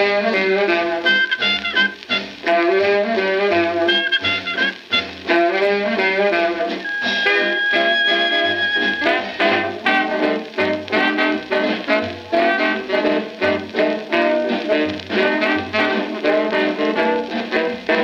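A 1937 swing dance orchestra recording played from a 78 rpm record: the band plays a swing number with a steady beat. A long high note is held for about two seconds, starting about seven seconds in.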